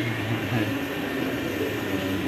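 Choir singing with held notes, heard as a muffled, reverberant din through a phone's microphone in a hall.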